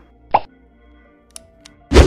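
Animated logo-intro sound effects: a short pop, then faint steady tones with a couple of small ticks, ending in a loud hit.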